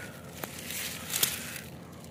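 A hand rummaging through leafy garden plants, leaves and stems rustling, with a small click about half a second in and a sharper, louder crack a little after one second.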